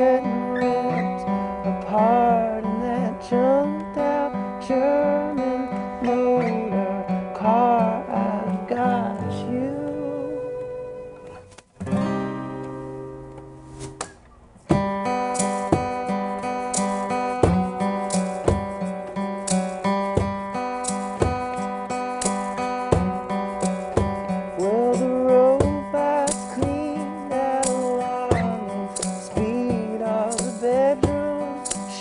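Live acoustic band music: strummed acoustic guitar with singing. About twelve seconds in, the music thins to a short, quieter held passage. Then the strumming comes back in loudly and carries on.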